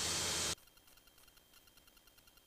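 Steady hiss of an aircraft intercom's open microphone that cuts off abruptly about half a second in, as the voice-activated squelch closes after the last words. Near silence follows, with only faint ticks.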